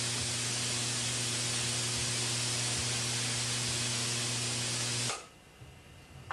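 Energized Tesla coil transmitter system running with a steady electrical hiss over a strong low mains hum, cutting off suddenly about five seconds in.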